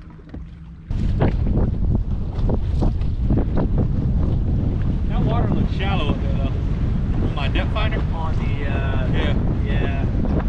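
Wind buffeting the microphone on an open boat deck, a heavy low rumble with waves on the water, starting abruptly about a second in; before that, a quieter steady hum.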